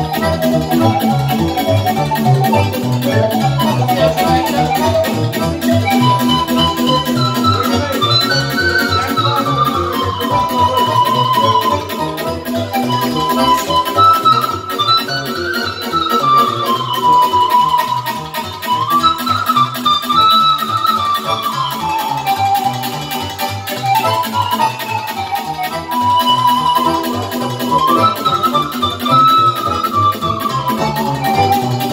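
Romanian pan flute (nai) playing a sârba dance melody in repeated falling phrases, over a keyboard accompaniment with a steady, quick beat.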